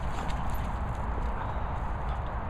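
Footsteps on wet grass as someone walks with the camera, over a steady low rumble on the microphone.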